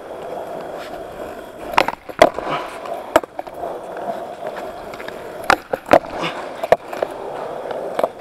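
Skateboard wheels rolling over concrete with a steady rumble, broken by several sharp clacks spread through the ride.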